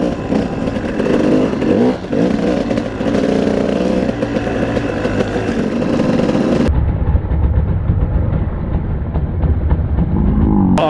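Dirt bike engine running and revving up and down as the bike is ridden, heard close up through a camera's onboard mic. About two-thirds of the way in the sound changes abruptly to a dull, deep rumble with the treble gone.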